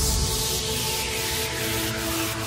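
Trance music at a breakdown: a white-noise sweep fades downward after the kick drum and bass drop out, over sustained synth pad chords, with a faint tick about twice a second.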